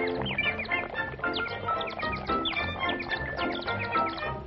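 Early-1930s cartoon orchestral score with many quick bird-like whistled chirps on top, each a short slide in pitch.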